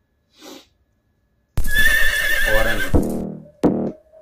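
A horse whinny, a wavering high call that falls in pitch, comes in suddenly about one and a half seconds in as the intro of a Punjabi rap track, followed by a second short loud burst near the end.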